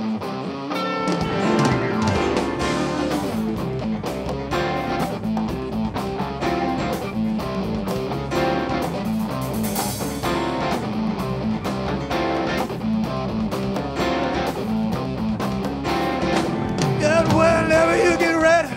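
Live rock band playing an instrumental passage: electric guitars, keyboards, bass and drums in a steady groove. The low end fills in about a second in, and a wavering lead line comes up near the end.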